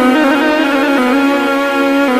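Synthesized arranger-keyboard music from a rai 'org' sound set: a sustained melodic line with ornamented slides between notes over held tones.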